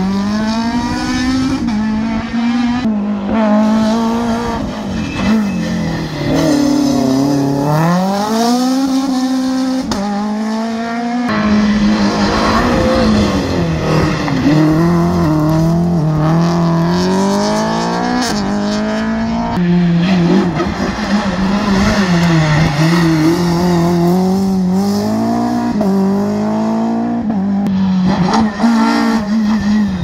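Rally car engines revving hard through a hairpin and accelerating away, with the pitch climbing and then dropping sharply again and again as the drivers shift gears.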